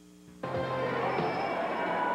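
The sound drops out for a split second at an edit. Then the steady noise of a large arena crowd comes in, with a few faint held tones in it.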